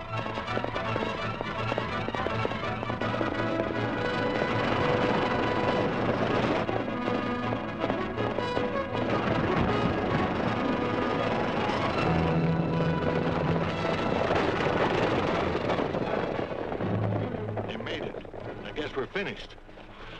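Orchestral film score playing a fast, dramatic cue over the clatter of galloping horses' hooves. Near the end the music fades and a few separate hoof knocks are heard as the horses slow.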